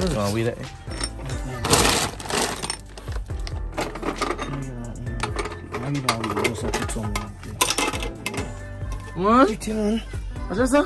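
A woven plastic sack rustling as yams are handled inside it, loudest about two seconds in, with a few sharp clinks near the end, over background music with singing.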